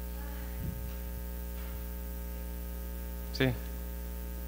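Steady electrical mains hum, with a faint low knock about two-thirds of a second in.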